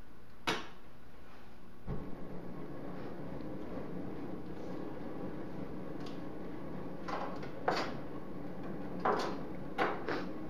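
A lead-melting pot's heat source being fired up: a steady hum starts suddenly about two seconds in, pulsing briefly as it catches, and keeps running. A sharp click comes just before it, and a few more sharp metal clicks and knocks follow near the end.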